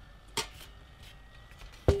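Two knocks of metal can antennas being handled on the bench: a lighter one, then a loud clank near the end that rings briefly with a short metallic tone.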